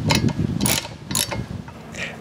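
Ratchet socket wrench clicking through quick strokes as a bolt is tightened down on a steel jig clamped over a chainsaw bar, with a few sharper clicks among the run.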